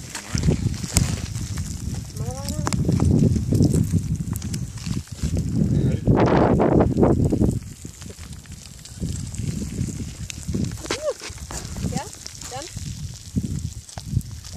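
A low rumbling noise that swells and drops, loudest for about a second and a half some six seconds in, with brief bits of people's voices heard faintly at times.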